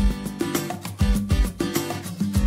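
Background music with a steady bass beat and plucked, sustained notes.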